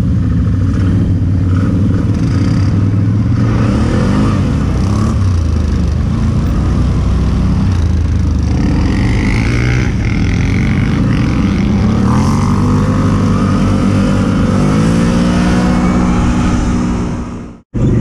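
ATV (quad bike) engines running close to the microphone as the quads pull away, the nearest one rising in pitch twice as it accelerates in the second half. The sound cuts off suddenly near the end.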